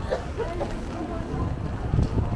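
Street ambience: passers-by talking over a low, steady rumble.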